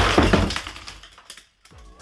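Clatter of LEGO plastic: a tower of spring-loaded LEGO shooters, set off by a dropped five-pound dumbbell, fires its missiles as its upper part breaks apart and falls onto a wooden floor. The crash is loud at first and dies away after about a second and a half.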